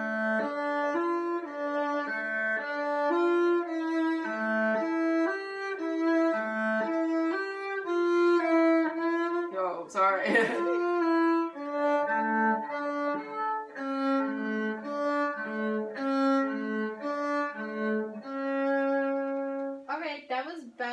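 Solo cello played with the bow in its middle register, a line of steady, separate notes aimed at a full mezzo forte. It still comes out on the quiet side, which the teacher puts down to the bow sitting too near the fingerboard and too little arm weight.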